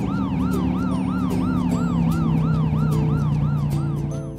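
Cartoon police car siren wailing up and down quickly, about four rises and falls a second, over a light music bed. It cuts off right at the end.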